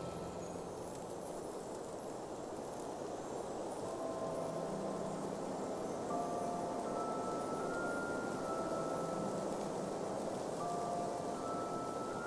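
Soft, sparse background music: a few held chime-like notes and a low sustained tone come in about four seconds in, over a steady wind-like hiss.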